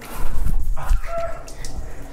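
Shower panel's jets suddenly switched on, water spraying out hard against tile and clothing, with a brief startled cry about a second in.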